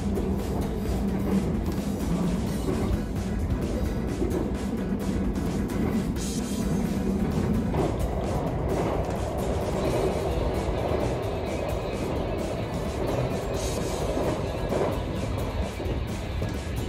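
Background music, with an electric train running along the rails beneath it.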